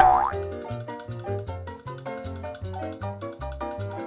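A short cartoon sound effect with a bending, springy pitch right at the start, the loudest moment, over playful children's background music with a steady bouncy beat.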